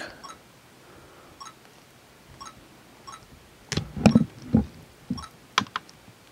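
Handheld camcorder being handled and its touchscreen pressed: faint ticks about once a second, then a short cluster of louder knocks and bumps about four seconds in.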